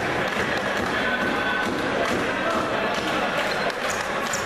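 Indistinct voices echoing in a large sports hall, a general murmur with no clear words.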